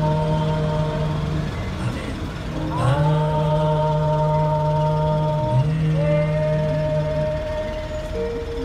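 A small group singing a hymn outdoors, in long held notes that change every two seconds or so, sliding up into one note about three seconds in.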